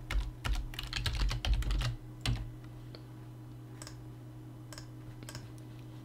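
Typing on a computer keyboard: a quick run of keystrokes over the first two and a half seconds, then a few single clicks spaced about a second apart. A steady low hum runs underneath.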